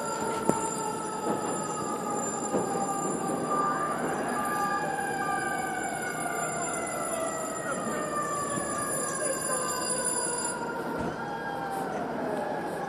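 Fire truck siren wailing, a long tone falling slowly in pitch, with another rise and fall about four seconds in.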